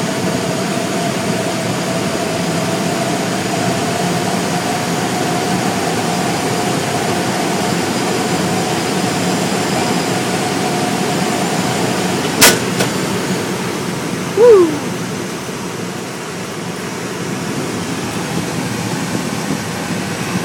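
Steady rush of air over a glider's canopy in flight, with a thin steady whistle that fades out about eleven seconds in. A sharp click comes about twelve seconds in, and a brief loud sound that falls in pitch follows two seconds later.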